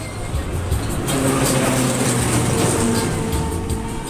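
Wind buffeting the microphone of a rider on a turning Ferris wheel, a steady rushing rumble, with a few held tones in the background from about a second in.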